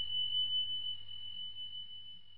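A single high, pure electronic tone ringing steadily and slowly fading, over a faint low hum: the sound effect of a 'Thanks for watching' end-card animation.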